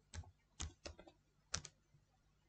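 Computer keyboard keys clicking as a word is typed: about six faint keystrokes in quick, uneven succession.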